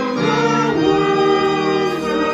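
A choir singing a church song in long held notes over a steady low accompaniment.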